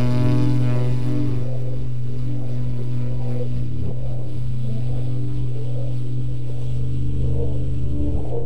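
Free-improvised jazz: one long, low note held steadily throughout, with fainter wavering notes above it.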